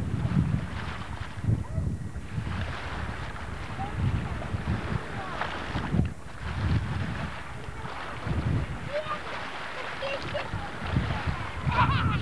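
Wind buffeting a camcorder microphone in irregular low gusts, with faint indistinct voices in the background.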